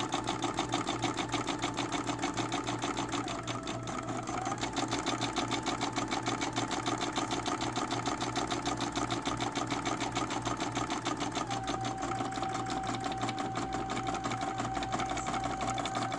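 Brother PE-770 embroidery machine stitching a test design, the needle running in a fast, even rhythm over a steady motor whine. The whine dips briefly a few seconds in and settles slightly lower near the end.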